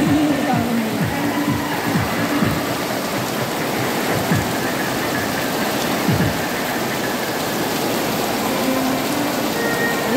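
Heavy rain pouring steadily on a circus tent's canvas and the ground, an even hiss throughout. Short low tones sweeping downward cut through it several times in the first couple of seconds, and again around four and six seconds in.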